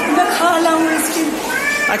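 A woman crying as she speaks, her voice breaking into a wail, with one long drawn-out note in the middle.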